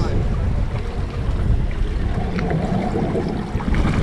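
Wind buffeting the microphone over the low, steady running of a Suzuki 300 outboard at trolling speed, with choppy sea water washing around the boat.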